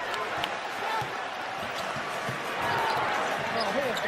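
Basketball dribbled on the hardwood court: a few sharp bounces over the steady noise of the arena crowd.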